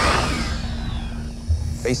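A velociraptor's shrieking roar, a film creature sound effect, loudest at the start and fading away over about a second, over a low steady drone. A low thud comes near the end.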